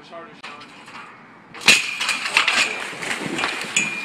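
A sudden loud splash about a second and a half in, as a person jumping off a trampoline drops into a swimming pool. The churning water carries on after it, with voices faintly around it.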